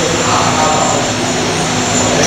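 Large electric fans running with a loud, steady whirr, the hum holding a constant pitch throughout.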